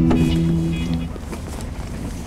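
Background music holding a chord that ends about a second in, over a low steady rumble.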